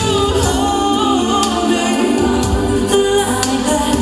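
Music with singing: a song whose vocal line holds and bends long sung notes over the accompaniment, playing continuously.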